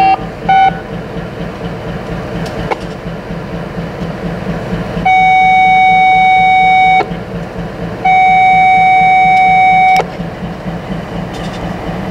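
Norfolk Southern EMD diesel locomotives idling with a steady low pulsing rumble. Twice, about 5 s and 8 s in, a loud steady single-pitched tone sounds for about two seconds. Two short beeps at the very start.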